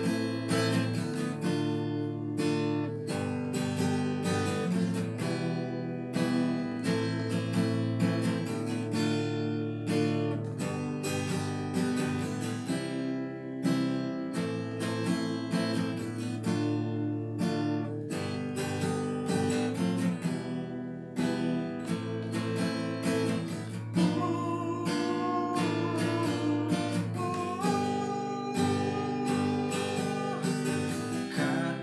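Steel-string acoustic guitar with a capo playing the instrumental passage of a pop ballad, strummed chords mixed with picked notes.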